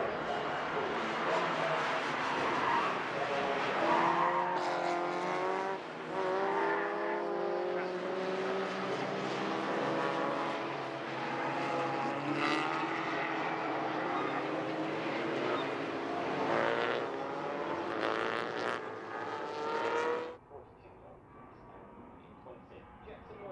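A pack of race cars accelerating together, many engines revving up through the gears at once, their pitches rising and overlapping. About twenty seconds in the sound cuts off suddenly to a much quieter, more distant engine sound.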